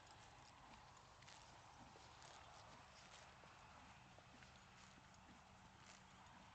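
Faint, irregular crunching and tearing of a horse cropping and chewing grass close by, a few soft clicks a second over near silence.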